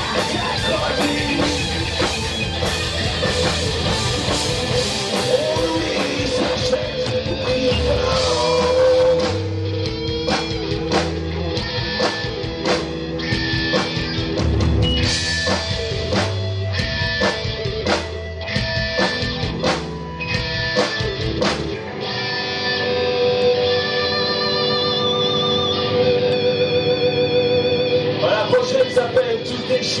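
Live rock band playing through a stage PA: distorted electric guitars, bass and drums, with a white hollow-body electric guitar prominent. About two-thirds of the way through the deep bass and drum hits drop out, leaving held, wavering guitar notes ringing out to close the song.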